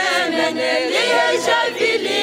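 A cappella choir singing, several voices together without instruments.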